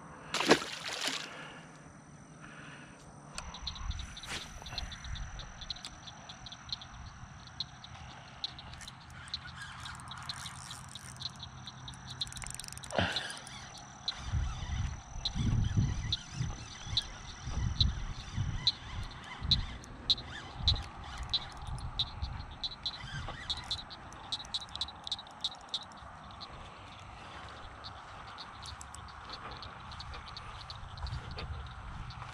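A released largemouth bass splashes into the pond about a second in. Then soft footsteps along a grassy bank, heaviest midway, with rapid clicking animal calls throughout in the background.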